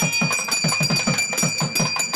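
Puja music: a drum beating steadily at about six strokes a second, with a high bell-like ringing tone held over it.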